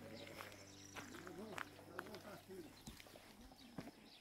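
A faint, distant voice talking, with a few soft clicks mixed in.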